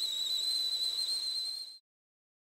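Whistling steam sound effect: one high whistle over a hiss of steam, rising slightly in pitch, cutting off sharply near the end.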